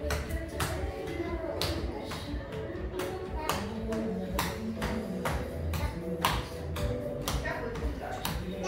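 Sharp taps, about one or two a second at an uneven pace, over a background of voices.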